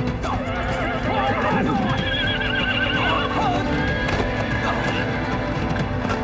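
Horses whinnying several times, in wavering calls during the first few seconds, with hoofbeats, over background music.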